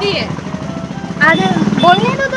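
A motor vehicle's engine running close by, a steady low drone, with voices talking over it during the second half.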